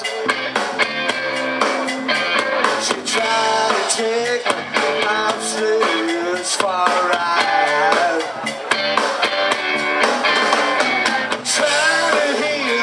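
A live rock band playing: electric guitars, bass guitar and a drum kit, with steady drum hits under bending guitar lines.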